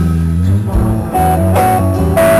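Live rock band starting a song: bass notes from the start, joined about a second in by sustained electric guitar notes.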